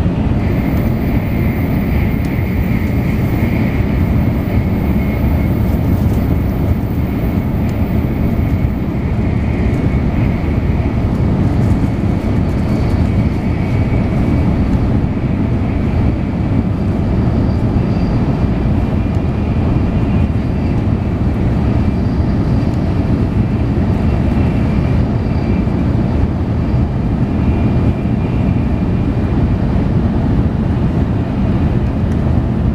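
Cabin running noise of a Tokaido Shinkansen N700-series Nozomi train at speed: a loud, steady rumble of wheels and rushing air, with a faint high hum over it.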